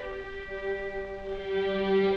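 Orchestral film score, slow and sad, with bowed strings holding long sustained notes; a lower note joins about one and a half seconds in.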